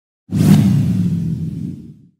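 Logo-animation sound effect: a sudden whoosh a quarter of a second in, with a deep low tail that slowly fades out near the end.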